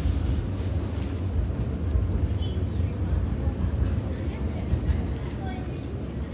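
Low rumble of an MTR underground train pulling away from the platform behind the platform screen doors, easing off near the end, with crowd chatter on the platform.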